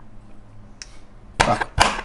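Kitchen knife chopping tomato on a plastic cutting board: quiet at first, then a few sharp knife strikes on the board in the second half.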